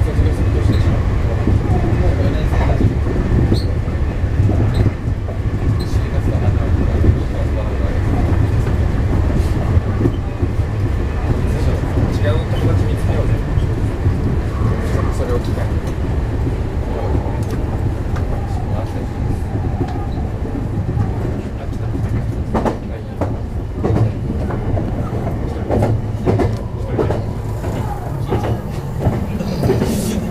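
Meitetsu electric commuter train running along the track, heard from inside the front car: a steady low rumble of wheels on rail, with scattered clicks as the wheels pass rail joints. The clicks come more thickly in the last several seconds.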